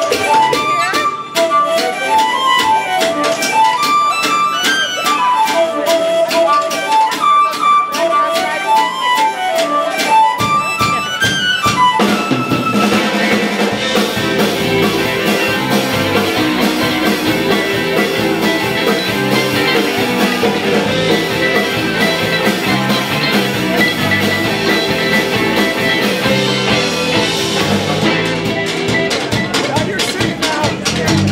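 Irish folk band playing live. A lone quick melody runs up and down for about the first ten seconds, then the bass and the rest of the band come in about twelve seconds in and play on together.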